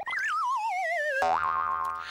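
Cartoon-style synthesized sound effect: a wobbling tone slides down for about a second, then gives way to a steady held electronic note with a short upward swoop.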